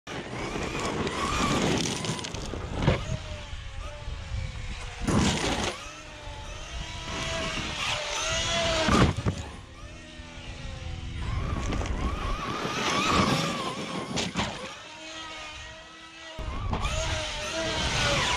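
Traxxas XRT 8S RC truck's brushless electric motor and drivetrain whining up and down in pitch as the throttle is blipped and held, with tyres tearing over loose gravel. Several hard thuds from jumps and landings.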